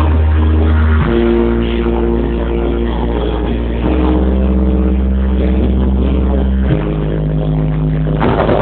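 Music played loud through a mobile DJ sound system: long held bass notes under sustained chords, changing about a second in, around four seconds, and again near seven seconds.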